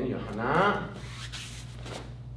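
A man says a word, then a taekwondo uniform's sleeve swishes as the arm swings up into a block, a short rustle about a second and a half in.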